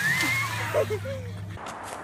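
Water splashing and churning as people plunge into a lake off a rope swing, with a short rising squeal and brief voices. The splashing cuts off suddenly about one and a half seconds in.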